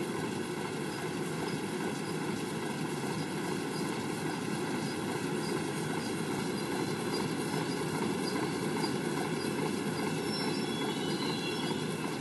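Machinery motors running in a steady drone, with a faint whine over it that grows slightly louder through the stretch.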